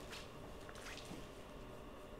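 Quiet room tone with two faint, brief soft sounds, one at the start and another about a second in.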